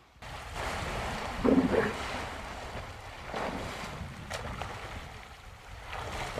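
Water splashing and churning as large animals move through a water hole, with wind noise on the microphone. A brief louder sound comes about a second and a half in.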